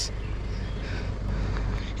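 Steady low rumble of wind buffeting a phone microphone while walking outdoors.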